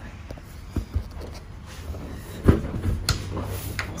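A few knocks and clunks from a metal stall divider and its knob latches being worked by hand, the loudest about two and a half seconds in, over a low handling rumble from the hand-held phone.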